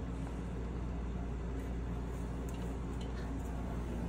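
Window air conditioner running with a steady hum, with a few faint light ticks in the second half.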